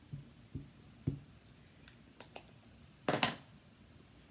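Small ink pad dabbed against a clear acrylic stamp block, a few soft low taps in the first second. A few light clicks follow, then a louder brief clatter of the craft tools on the table just after three seconds in.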